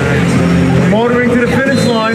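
People's voices, talking and calling out over one another without clear words.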